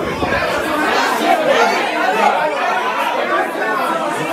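Several men talking over one another: indistinct group chatter.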